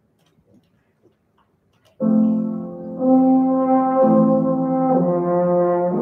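After a near-silent pause with faint rustles, a French horn and piano start playing together about two seconds in, the horn holding long notes over the piano that change about once a second.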